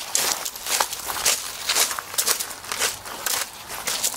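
Footsteps of people walking at an even pace, about two steps a second.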